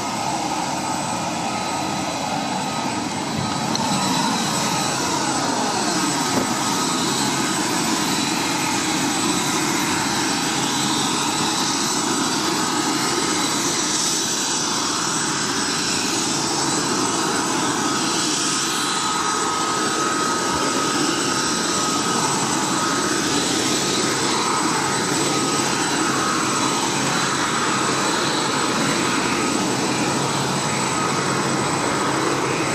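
Chinook twin-rotor helicopters running nearby: a steady, dense engine and rotor noise with a high whine and slow pitch glides.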